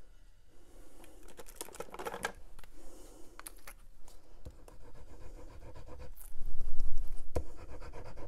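Paper-craft handling: cardstock scraped and rubbed on a cutting mat while the tip of a liquid glue bottle scratches across the paper, with scattered small taps and clicks. Near the end there is a louder stretch of rubbing and one sharp click.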